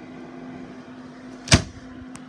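A single sharp knock about one and a half seconds in, as a small appliance door (the ice maker's) is pushed shut, over a steady low hum.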